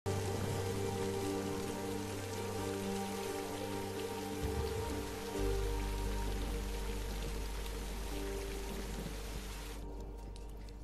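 Steady rain hiss with a film score of long held low notes and a deep drone underneath. The rain cuts out just before the end, leaving the music.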